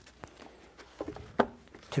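A few faint, sharp knocks and clicks in a pause between spoken words: a hymnal being picked up and opened at a pulpit microphone. The next word of speech begins right at the end.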